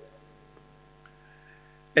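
Faint steady electrical mains hum with several overtones, carried by the microphone and sound system during a pause in speech. The reverberant tail of the last spoken words dies away at the start.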